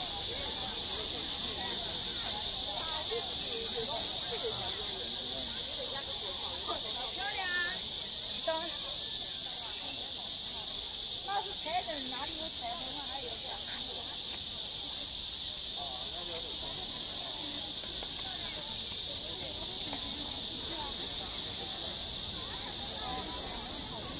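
Water jets of a large fountain spraying: a loud, steady, high hiss, with scattered voices of people faint beneath it.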